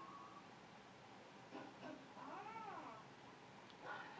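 Dog whining softly: one faint whine, rising then falling in pitch, a little over two seconds in.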